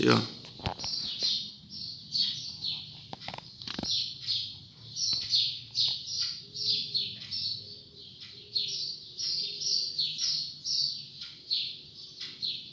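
A male double-collared seedeater (coleiro) singing a long run of short, down-slurred high notes, about two a second, breaking its song into clipped phrases ('picando o canto').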